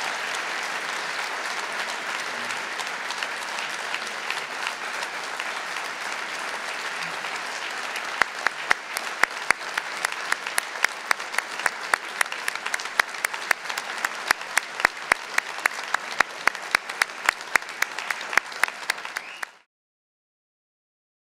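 Audience applauding. From about eight seconds in, sharp, evenly spaced claps stand out above the crowd at about three a second, and the applause cuts off abruptly near the end.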